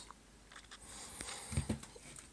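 Faint handling noise as hands grip and move a small wooden speaker cabinet: soft rustling with a few light knocks about one and a half seconds in.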